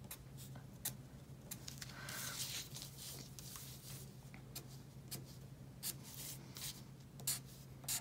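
Black Sharpie felt-tip marker drawing short strokes on paper: quick scratches and taps of the tip. A sheet of paper slides and is turned on the table about two seconds in. A low steady hum runs underneath.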